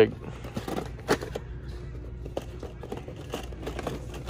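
A boxed action figure in cardboard-and-plastic packaging being handled and hung on a metal pegboard hook: scattered light clicks and crinkles, with a sharper click about a second in, over a steady low store hum.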